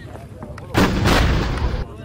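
A heavy gun or artillery piece firing: a sudden loud blast about three quarters of a second in, its report rolling on for about a second before cutting off abruptly.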